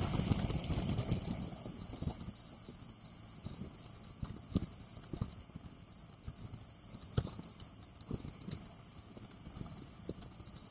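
Motorcycle riding at highway speed heard from a bike-mounted camera: a loud rush of wind and road noise for the first second or so, easing off, then a quieter steady run broken by scattered irregular knocks.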